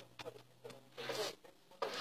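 Close-up rustling and smacking sounds as a small grey bird is held against a woman's mouth. Short soft voice sounds come in between. The strongest noisy bursts come about a second in and near the end.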